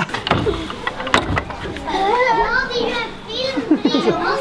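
Young children's voices babbling and chattering without clear words, with a few short knocks.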